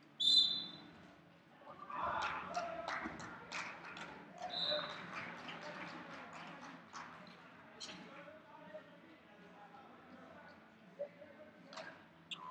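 Two short blasts of a referee's whistle, one right at the start and one about four and a half seconds in, over people talking in a gymnasium, with scattered sharp clicks and knocks.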